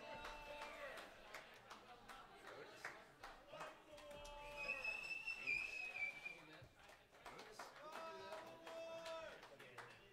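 Quiet, indistinct voices chattering between songs, with a single high, slightly wavering tone held for about two seconds near the middle.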